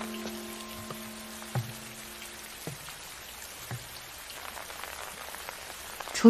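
Steady rain falling, with a held note of soft background music dying away in the first half. Three soft low thuds come about a second apart.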